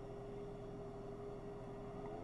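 A pause between speech: faint background hiss of an old recording, with a thin, steady hum held at one pitch.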